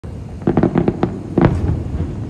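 Distant aerial fireworks shells bursting: a quick run of about half a dozen bangs starting half a second in, then a louder bang about a second and a half in, over a low rumble.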